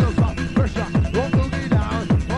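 Electronic dance music from a DJ mix: deep kick drums with a falling pitch hit several times a second, under bending higher synth or sampled lines.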